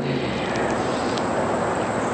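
A steady, even rushing hiss with no distinct pitch, holding at one level throughout.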